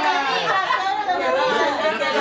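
Several people talking at once: a crowd of dinner guests chattering in a room.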